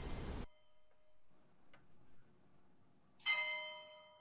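A bell struck once about three seconds in, ringing with several overtones and fading away. Before it, the faint tail of an earlier ring dies out.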